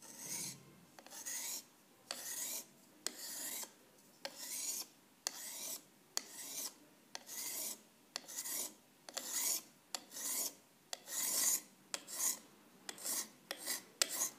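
A small hand-held sharpening stone stroked along the edge of a Solingen steel scissor blade, honing it: a run of short scraping strokes, about one and a half a second, quickening a little near the end.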